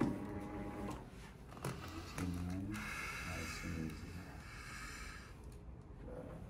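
A woman's wordless groans and moans in response to a chiropractic thrust to her mid-back. They start suddenly, some fall in pitch, and a higher drawn-out sound follows in the middle.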